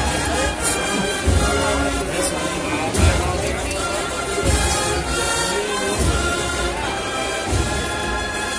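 A Holy Week agrupación musical, a brass band with drums, playing a slow processional march with held brass chords and a bass drum beat about every second and a half, over the chatter of a large crowd.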